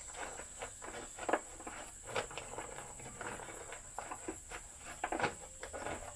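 Scattered rustles and light clicks as an empty paper bag is handled and fitted into an upright vacuum cleaner.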